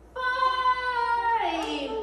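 A young child's high voice singing one long note for about a second, then sliding down in pitch.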